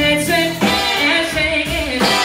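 Live band music: a woman singing lead over electric guitars, drums and a horn section.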